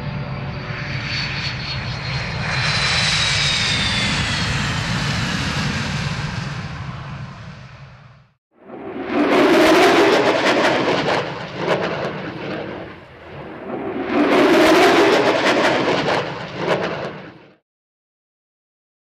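EF-18 Hornet jet running its twin turbofans on the runway at takeoff power. The roar carries a high whine that glides down in pitch over several seconds before the sound cuts out abruptly. After a short gap, two more loud, crackling surges of jet noise rise and fall.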